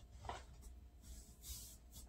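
Faint close-up chewing and mouth sounds while eating with the mouth closed: a soft smack about a quarter second in, then a short breathy hiss in the second half.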